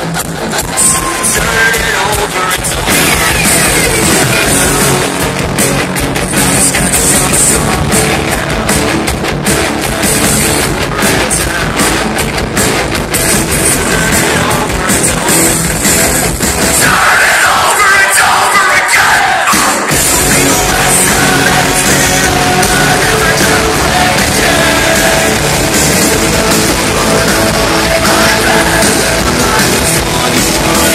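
Live metalcore band playing loud through a venue PA, with guitars, drums and vocals, heard from the crowd. About two-thirds of the way through, the bass drops out for about three seconds before the full band comes back in.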